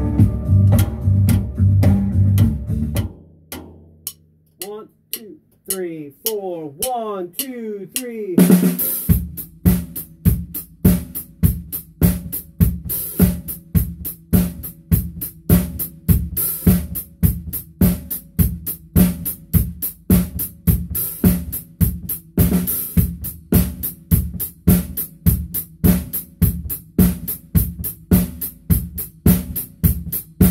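Acoustic drum kit playing a steady rock groove at full tempo with no backing track, snare and bass drum under cymbal strokes. It comes in about eight seconds in, after a few seconds of other music and some gliding pitched sounds.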